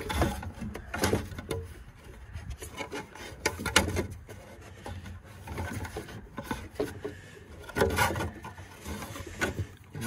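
Rubber drive belt on a semi truck scraping and rubbing as it is worked off around the engine's cooling-fan blades one blade at a time, with irregular clicks and knocks of handling.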